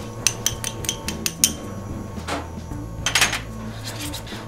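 Metal clinking against a stainless steel saucepan on an induction hob as shallots go into the pan: a quick run of about seven light taps in the first second and a half, a softer scrape, then another short clatter near the end.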